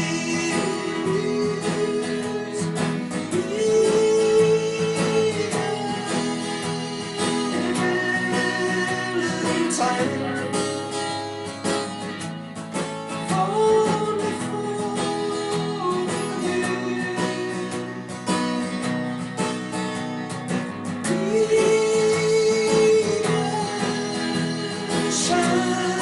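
A man singing a country-rock song to his own strummed acoustic guitar, the chords steady and the sung lines held and drawn out.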